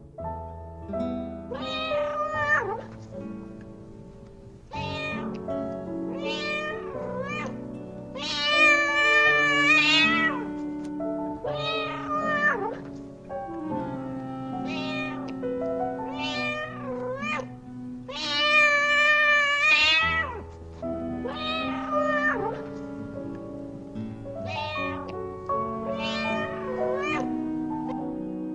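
Meowing set to music: a string of meows every second or two, two of them long and wavering, over steady held accompaniment notes.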